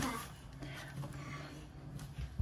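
Quiet room tone with a faint steady low hum, as a voice trails off at the very start.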